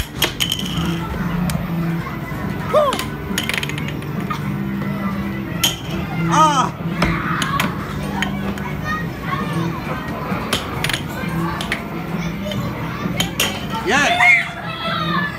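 Busy arcade din of children's voices and background music, broken by several sharp clacks of the plastic air hockey puck striking the mallets and the table rails.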